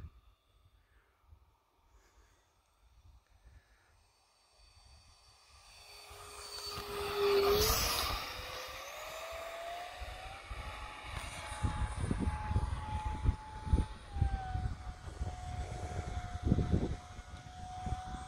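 The FMS 50 mm electric ducted fan of a model jet whines as the plane flies past, fading in about five seconds in and loudest around eight seconds. After the pass its pitch climbs and then holds as a steady whine, with gusty wind rumble on the microphone.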